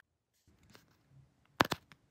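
Dried paint being peeled off a plastic paint palette: faint scratchy crackles, then a sharp double click about one and a half seconds in.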